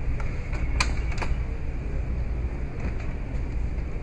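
Peterbilt truck cab door latch being worked and the door pulled open: two sharp metallic clicks about a second in, a few fainter clicks around them, over a steady low rumble.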